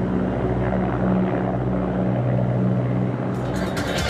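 A firefighting helicopter's rotor running steadily, a low hum with a regular pulsing beat. Near the end a rapid ticking comes in, leading into music.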